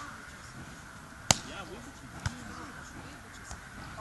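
A volleyball being hit by hand during a rally: one sharp smack about a third of the way in, then a softer thump about a second later, with faint voices in the background.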